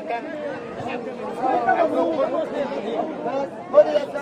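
Several voices talking over one another in an unintelligible babble of chatter.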